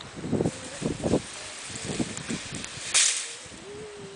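Coffee beans rattling and sliding on a large wooden-framed mesh sieve as it is shaken: a run of rustling knocks in the first two seconds, then a short loud rush of beans about three seconds in.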